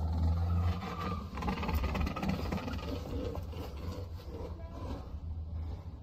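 Low rumble of a car engine running, picked up on a phone camera in an open parking lot, strongest in the first second and then steady, with faint background noise.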